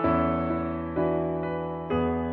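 Solo piano playing a slow, gentle ballad: chords struck near the start, about a second in and again near the end, each left to ring and fade.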